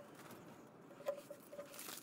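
Sheets of printer paper handled by hand: light crinkling and rustling with a few small ticks, and a brief louder crumple near the end as the offcuts are scrunched.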